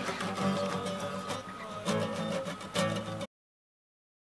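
Classical guitar being strummed, chords ringing with a few strokes, until the sound cuts off abruptly a little after three seconds in.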